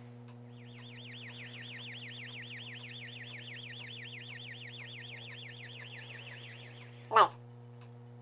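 An electronic siren warbling fast and evenly, like an ambulance siren, starting about half a second in and stopping near the end, over a constant low electrical hum.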